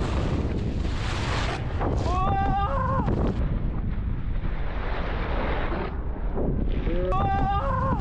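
Wind rushing over a moving camera's microphone, mixed with snowboards sliding and scraping on groomed snow. A voice gives two short shouts, about two seconds in and again near the end.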